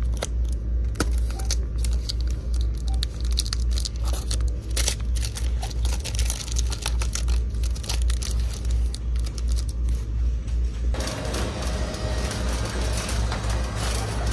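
Background music with a steady, pulsing low beat, over light clicks and rustles of small plastic-wrapped packs being handled.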